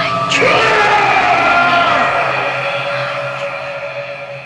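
A sharp crack, then a long wailing cry that falls in pitch over about two seconds, over a steady music score.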